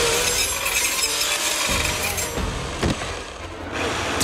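Hedge trimmer running in a movie fight scene, a loud buzzing rasp that eases off after about two seconds, with a sharp knock near the end.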